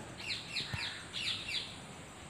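A bird chirping: a run of short, quickly falling high notes, some in pairs, over most of the first second and a half.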